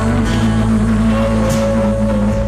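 Rock music with electric guitar: steady low notes hold underneath, and a long sustained higher note comes in about a second in.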